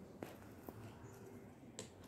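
Plastic interlocking toy bricks clicking as pieces are pressed and fitted together: three faint, sharp clicks, the last near the end.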